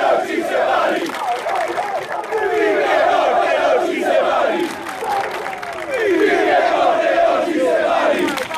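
A large crowd of football ultras chanting and shouting together in repeated phrases.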